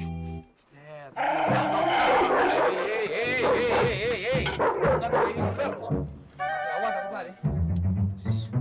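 Dogs vocalising close by, with background music underneath.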